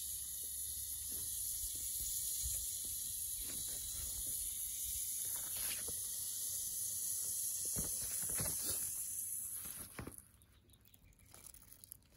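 Magnesium ribbon fizzing in 6 M hydrochloric acid as it gives off hydrogen: a steady high hiss that dies away about ten seconds in as the reaction finishes, with a few faint taps of glass on the porcelain dish.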